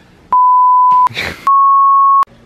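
Two loud censor bleeps laid over swearing, each a steady single-pitched beep about three-quarters of a second long, the second a little higher than the first. A brief snatch of voice comes between them.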